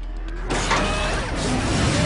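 Sci-fi sound effect of a cartoon DeLorean time machine powering up and lifting into hover. A sudden loud rushing noise starts about half a second in and holds, with rising whines in it.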